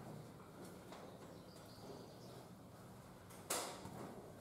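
Quiet indoor room tone with a faint steady low hum. A single short burst of noise comes about three and a half seconds in.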